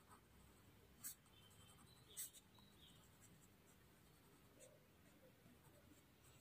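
Near silence with two faint, short graphite pencil strokes on a paper Zentangle tile, about one and two seconds in.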